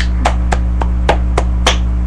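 A person clapping hands steadily, about three to four claps a second, over a constant low electrical hum from the webcam microphone.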